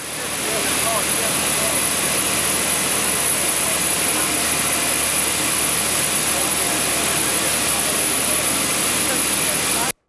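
Loud, steady jet engine noise from aircraft on an airport ramp, with a few faint voices in the first second; it cuts off suddenly just before the end.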